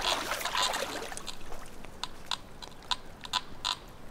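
Scattered faint clicks and rustles over the low, steady trickle of a shallow creek.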